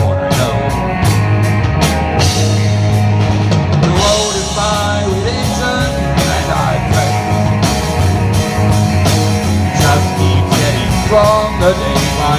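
A rock song played live by a band: electric guitars and bass over a drum kit with a steady beat of cymbal and drum strokes.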